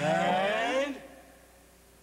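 Voices giving a drawn-out, wavering vocal cry that glides in pitch for about a second, then fade away.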